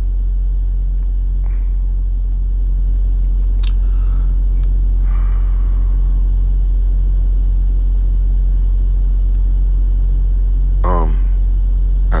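Steady low rumble with a deep, constant hum underneath, with a single sharp click about four seconds in.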